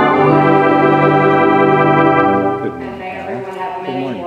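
Organ holding a long sustained chord that stops about two and a half seconds in, followed by a woman's speaking voice.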